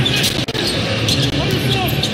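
Basketball being dribbled on a hardwood court: repeated short bounces, with voices faintly behind.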